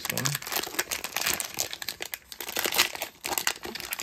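Foil wrapper of a trading-card pack crinkling and crackling as hands peel it open, a dense run of crackles with brief lulls about two and three seconds in.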